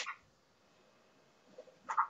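Quiet room tone for most of the time, with a brief sharp throat noise from the man near the end.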